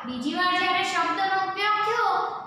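Speech only: a voice reciting in a drawn-out, sing-song way, with long held syllables.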